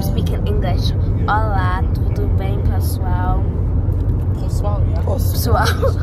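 Car cabin noise while driving, a steady low road and engine rumble, with a voice rising over it a couple of times and again near the end.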